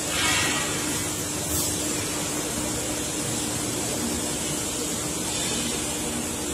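Steady workshop background noise: an even hiss with a constant low hum underneath, swelling briefly just after the start.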